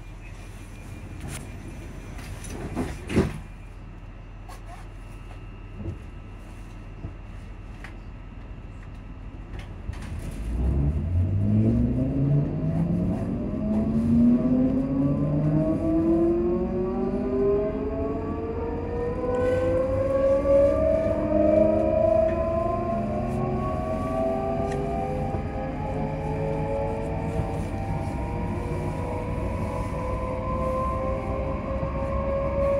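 ScotRail Class 334 electric multiple unit pulling away from a stop: a thump about three seconds in, then about ten seconds in the traction motors start a whine of several tones that climbs steadily in pitch and grows louder as the train gathers speed.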